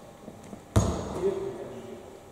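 A single basketball bounce on the hardwood court, a sharp thud with a reverberant tail, a little under a second in.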